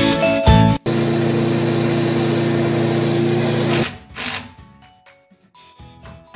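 A handheld electric metal-cutting tool cutting a steel roofing panel: it runs steadily for about three seconds, starting about a second in, then stops.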